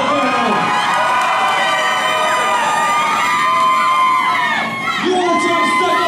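A small live crowd, many of them children, shouting and yelling together in long, held high-pitched calls. The noise dips briefly near the end.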